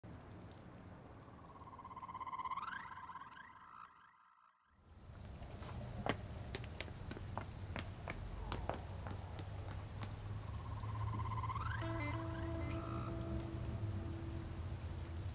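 Film-trailer sound design: a rising tonal swell that cuts off into a moment of silence, then a low steady drone with scattered sharp ticks, and a second rising swell that settles into two held tones near the end.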